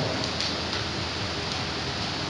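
Steady, even hiss of background noise, with no voice.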